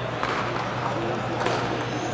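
Table tennis ball ticking sharply off paddles and the table during a doubles rally, a few clicks over a couple of seconds, against a steady low hum and murmuring voices in the hall.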